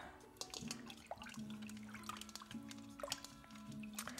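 Soft background music with sustained low notes, over faint drips and small splashes of water as a hand swirls herb-infused water in a metal pot.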